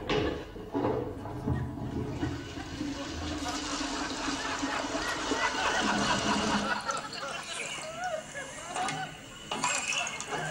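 High-level toilet cistern flushed by its pull chain, with water rushing for several seconds before dying away.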